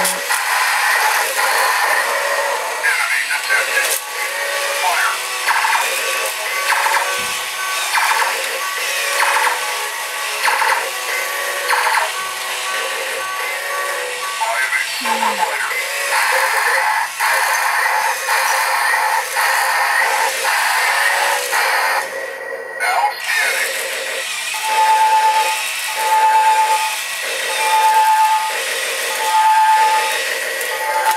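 Hap-P-Kid Turbo Fighter toy robots running, playing their built-in electronic music and voice-like sound effects. A repeating beep sounds about once a second near the end.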